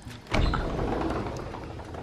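A sliding glass door rolling along its track: a sudden low rumble about a third of a second in, fading slowly.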